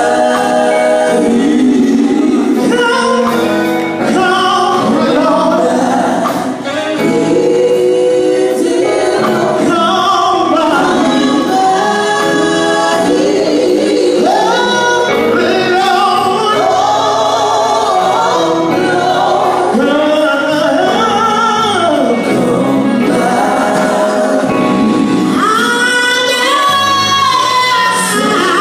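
A women's gospel vocal group singing into microphones, amplified through stage speakers, continuously and loud.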